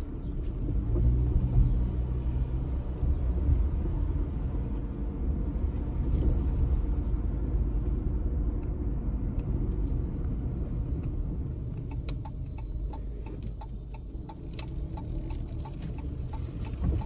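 Car driving slowly, heard from inside the cabin: a steady low rumble of engine and road noise, with a run of light ticks in the last few seconds.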